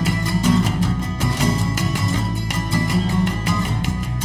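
Instrumental band music led by guitar over a bass line, with fast, evenly spaced strummed strokes and no singing.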